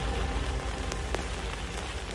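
Steady rain-like hiss with scattered crackle clicks over faint low bass notes, the tail of a lofi hip hop track fading steadily out.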